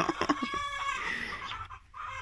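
Hens clucking close by, with a couple of drawn-out calls in the first second and a half.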